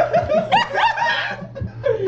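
Men snickering and chuckling, with a few spoken words mixed in, over a low steady hum.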